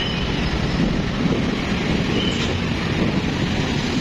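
Road traffic at a busy junction: a steady, heavy rumble of engines and tyres from a truck and many motorcycles passing close by.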